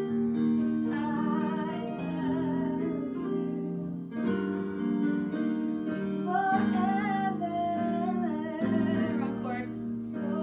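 A woman singing a slow song with vibrato, accompanying herself on an electronic keyboard with sustained, changing chords.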